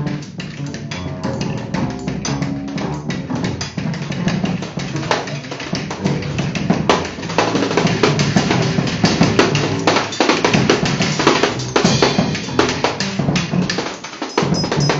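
Live drum kit played busily, with quick strokes on drums and cymbals, over a double bass line. The playing grows louder and denser about halfway through.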